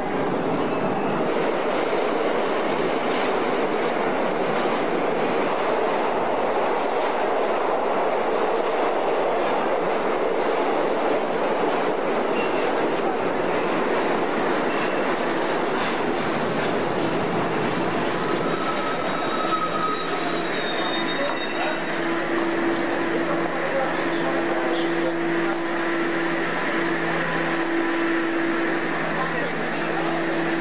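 New York City subway train running through the station, a loud, steady rumble of steel wheels on rail. High-pitched squeals come in about two-thirds of the way through, followed by a steady low hum from the train.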